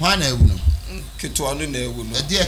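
A man talking into a studio microphone in a language the recogniser does not catch, with two short low thumps about half a second in.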